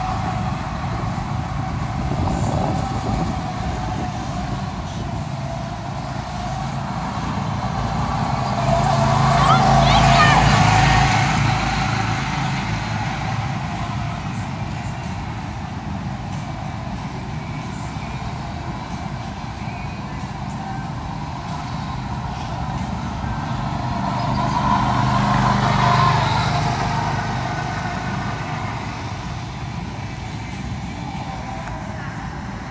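Go-kart engines running around a track, a steady drone that swells twice as karts pass close by, about a third of the way in and again near the end.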